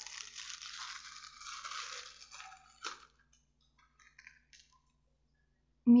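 A small white pouch crinkling and rustling as it is handled and opened, for about two and a half seconds, then a sharp click just before three seconds in and a few faint light taps.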